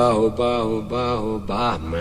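Music with a singing voice: several short held sung phrases, the pitch wavering on each note.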